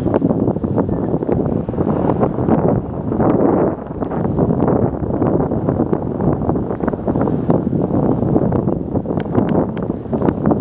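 Wind buffeting the camera's microphone: a loud, rough, gusting rumble with crackles.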